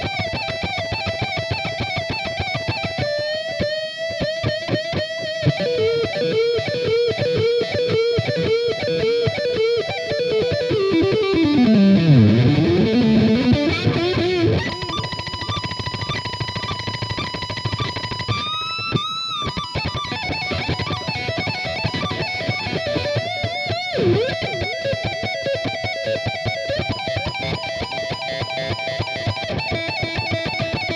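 Electric guitar playing a fast lead solo: rapid repeated triplet runs high on the neck, a deep swoop down in pitch and back up about twelve seconds in, then held notes and pinch-harmonic bends before more fast repeated high notes.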